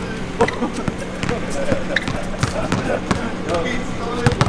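A basketball being dribbled on a hard court floor: a quick, uneven run of bounces, about two or three a second.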